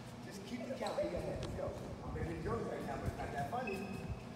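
Indistinct voices talking in a school gym, with a few scattered thuds on the wooden floor.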